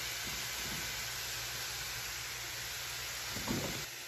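Chopped onion, carrot and mushrooms sizzling steadily in a hot frying pan. A brief, slightly louder noise comes near the end.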